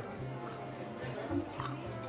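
Quiet background of soft music with faint, indistinct voices in the room.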